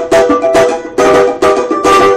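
Marquês acrylic-bodied Brazilian banjo with an ebony fingerboard, strummed in a steady rhythm of chords with accented strokes about twice a second.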